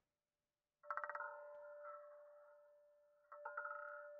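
Electronic sound effects from an online roulette game. About a second in, a quick rattle of ticks sets off a steady, chime-like ringing that slowly fades. A second rattle and ring start near the end.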